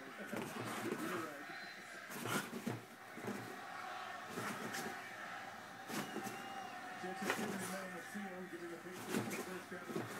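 French bulldog grunting and growling as it wrestles with a loose couch slipcover, with fabric rustling and scattered soft thumps. Television sports commentary runs underneath.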